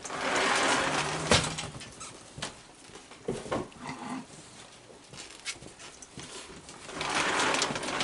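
A crowd of raccoons feeding at close range: short growls and chitters about halfway through, scattered knocks and scuffling, and rustling in the first second and again near the end.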